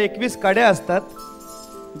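A man's voice speaking briefly into a microphone over a steady drone of held musical notes, with light metallic clinking from the iron langar chain in his hands.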